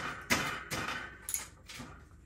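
A 15 mm socket ratchet worked back and forth on a bicycle's rear axle nut: a run of short metallic ratcheting strokes, about three a second.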